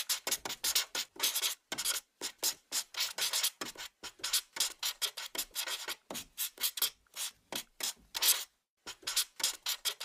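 Sketching sound effect: quick scratchy strokes of a writing tip on paper, two or three a second, with a couple of brief pauses, laid over a hand-drawing animation.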